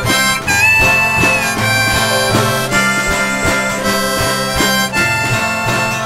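Instrumental break in a folk waltz: a sustained, reedy lead melody over strummed ukuleles and guitars keeping a steady waltz rhythm.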